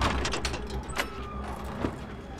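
A run of sharp mechanical clicks and rattles, like a latch or metal mechanism being worked, over a low steady rumble.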